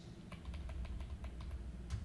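Computer keyboard typing: a quick run of light keystrokes, with a slightly louder one near the end.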